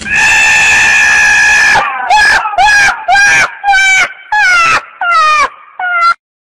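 Donkey braying loudly and close: one long held note, then a run of about seven short, rhythmic hee-haw calls, each sliding down in pitch.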